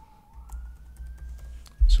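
A few computer keyboard keystrokes as a short number is typed into a form field, over a low rumble. A faint high tone slowly falls and then rises in pitch behind them, and a low thump comes near the end, just before a spoken word.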